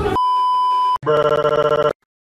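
A steady high beep lasting about a second, then a cartoon telephone bell ringing in a fast trill. The ring cuts off suddenly just before the end.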